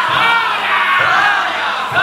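A large group of danjiri rope-pullers shouting a running chant together as they haul the festival float, many voices overlapping in repeated calls.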